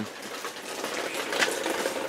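Heavy rain falling steadily, an even hiss.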